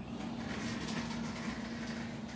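A steady low hum with a soft rushing noise over it from about half a second in.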